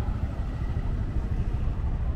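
Auto-rickshaw's small engine idling steadily at the roadside, a low even rumble.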